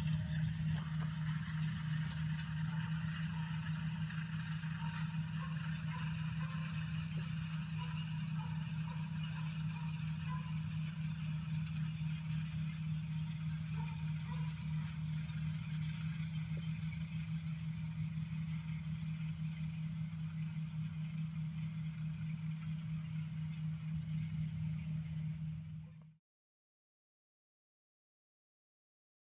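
John Deere tractor engine running steadily as it pulls a cotton planter, a low even drone. The sound cuts off abruptly about 26 seconds in.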